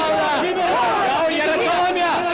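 A crowd of men shouting and chattering all at once, many voices overlapping.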